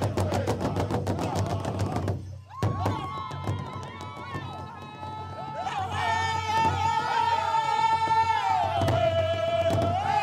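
Powwow drum and singing for a men's fancy dance: a fast, steady drumbeat, a short break about two seconds in, then high singing with long held notes over the drum.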